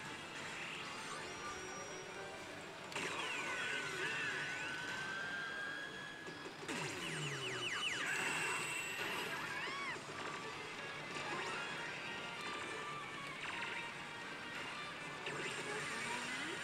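An Oshi! Banchou 4 pachislot machine plays its music and electronic effect sounds: sweeping, chiming tones that jump in loudness about three seconds in and again near seven seconds. Underneath runs the steady din of the surrounding machines.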